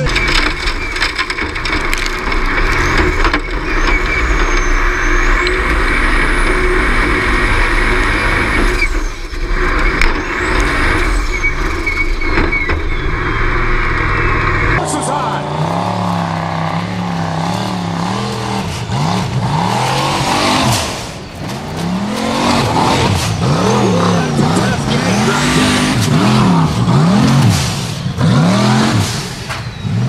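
Formula Offroad buggy's engine running hard under load as it claws up a steep dirt hill. About halfway through, the sound changes abruptly to a series of revs rising and falling about once a second as the throttle is worked on the climb.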